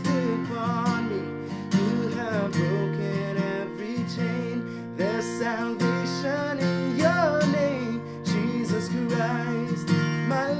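Acoustic guitar strummed in steady chords while a man sings a melody over it.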